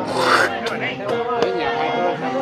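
A twig broom sweeping bare dirt ground: one loud scratchy stroke in the first half second, then a couple of shorter scrapes.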